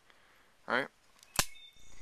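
Kershaw Half Ton manual folding knife opened by its thumb stud, the blade snapping into its liner lock with one sharp, loud click about a second and a half in.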